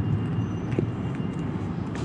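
Steady low outdoor rumble, with a couple of faint light clicks from a spinning reel being fitted into a rod's reel seat.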